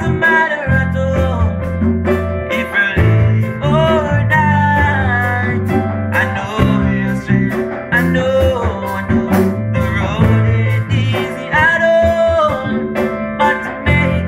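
Small live band playing: electric bass guitar holding a low bass line, a drum kit keeping a steady beat with cymbal strokes, and hand drums, with a voice singing over the top.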